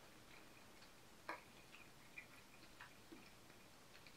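Near silence with a few faint, irregular clicks of the mouth as a man chews and tastes a bite of sausage with mustard, the clearest about a third of the way in.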